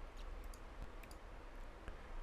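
A few faint clicks over a low, steady room hum.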